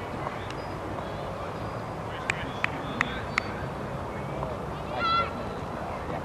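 Open-air background noise, with four sharp clicks in quick succession a little past two seconds in, then a short, high honking bird call about five seconds in.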